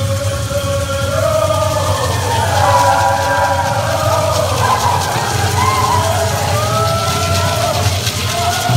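Chorus of voices singing a Pueblo buffalo dance song together, in long held notes that rise and fall.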